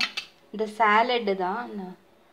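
A short metal clink as a spoon is set against a white ceramic bowl, followed about half a second later by a woman's voice speaking for a second and a half, louder than the clink.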